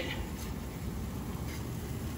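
Thick cream sauce sizzling steadily in a cast-iron skillet on a gas burner while a wire whisk stirs it.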